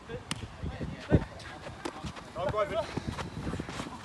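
Players shouting to one another during a handball game, with one heavy thud of the handball about a second in, the loudest sound.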